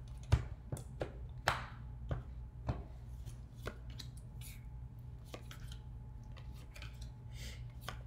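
A tarot deck being cut into piles by hand: a run of light card taps and snaps, busiest in the first few seconds and sparser after, over a low steady hum.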